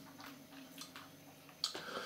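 Quiet room tone with a faint steady hum, a few faint small ticks and a short click near the end.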